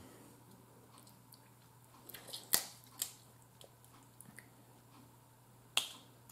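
Cooked snow crab leg shells being cracked and pulled apart by hand: a few sharp cracks about halfway through and one more near the end, with smaller clicks between.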